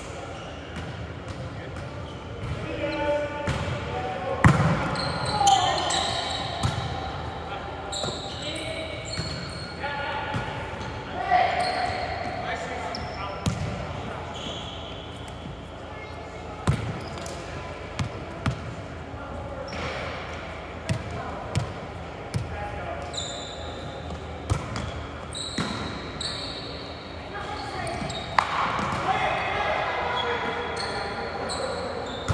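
Indoor volleyball play in a large, echoing gym: players' voices calling and chatting, with scattered sharp thuds of the ball being struck and hitting the hardwood floor.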